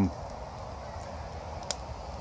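Steady outdoor background noise in a pause between speech, with one short click near the end.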